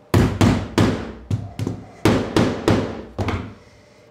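Shop-made wedges being tapped in to lock a board tight on a CNC spoil board: about ten sharp knocks in quick groups of two or three.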